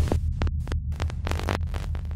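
Intro sound effect: a steady low electronic hum with short glitchy clicks and stutters scattered through it.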